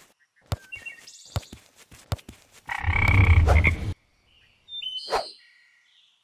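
Cartoon sound effects for toy figures: a run of light taps, then a loud buzzy pitched tone about three seconds in lasting just over a second, followed by brief high whistle-like squeaks and a sharp tap near the end.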